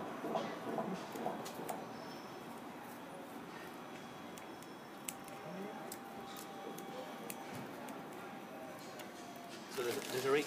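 Scissors snipping grass and leaf litter close to the ground. Several sharp snips come in the first two seconds, then the snips grow sparse over a quiet outdoor background.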